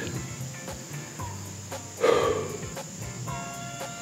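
Crickets or other insects trilling steadily, a high thin drone with an even pulse, with one brief louder noisy sound about halfway through.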